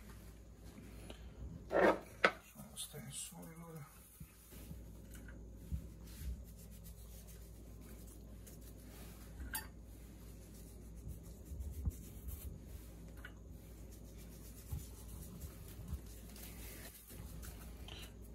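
Quiet handling sounds: nitrile-gloved hands rubbing over a whole boiled chicken in a glass baking dish, with a few faint taps. A short louder sound comes about two seconds in.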